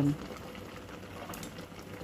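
Soup boiling in an uncovered stainless steel stockpot: a steady bubbling.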